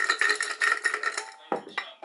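Plastic illy coffee capsules clattering and clinking into a glass jar as they are poured from a plastic bag: a dense rattle for about the first second, then a single knock about one and a half seconds in.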